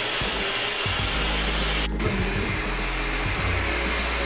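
Hair dryers blowing at full speed with a steady rush of air: first a Dyson Supersonic, then, after a brief break about two seconds in, a Laifen Swift. Both have high-speed motors of about 110,000 rpm.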